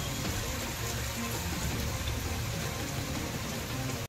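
Steady rain falling, with soft background music underneath.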